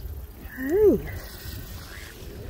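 A single short pitched call, rising then falling in pitch, about half a second in, over a steady low wind rumble on the microphone.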